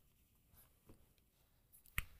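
Faint taps and squeaks of a dry-erase marker writing on a whiteboard, ending in a sharper tap.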